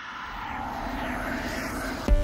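A rushing noise that swells up out of silence and grows steadily louder, an edited whoosh or riser transition effect.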